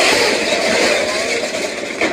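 Rusty corrugated steel roller shutter being pushed up, its slats rattling and rumbling loudly, and it eases off a little toward the end.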